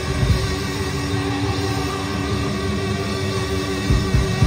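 Live hard-rock band playing through the stage PA: electric guitars holding tones over bass and drums, with no vocals. A few heavy drum hits come near the start.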